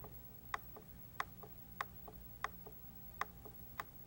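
Domestic sewing machine clicking faintly and evenly, about one and a half stronger clicks a second with softer ones in between, as satin stitches are sewn slowly into a mitered corner.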